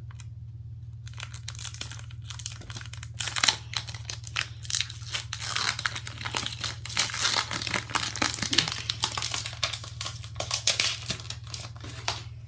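Foil Pokémon Generations booster pack wrapper crinkling and tearing as it is pulled open, starting about a second in as a dense run of crackles.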